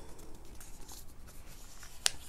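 A sheet of A4 paper being handled and pressed into folds on a tabletop: faint rustling with a few soft crinkles.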